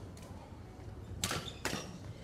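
Badminton rally: sharp cracks of a racket striking the shuttlecock, two close together a little over a second in, over the low hum of the sports hall.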